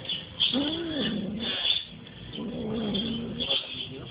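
A cat meowing twice: a short call that rises and falls about half a second in, then a longer, lower, wavering call about two seconds later.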